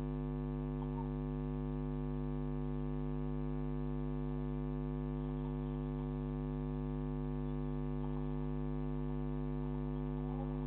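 Steady electrical mains hum, a constant low buzz with many evenly spaced overtones, carried in a security camera's audio, with a couple of faint ticks about a second in and near the end.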